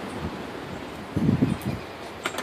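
Steady outdoor background noise with wind rustling on a handheld camera's microphone, and a brief low rumble a little over a second in.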